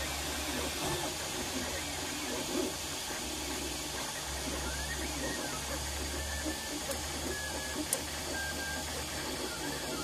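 MakerBot 3D printer printing: the stepper motors moving the dual-extruder print head hum and whine in tones that keep switching pitch as the head changes speed and direction. The result is the printer's odd little tunes, over a steady cooling-fan hiss, with a couple of faint clicks near the end.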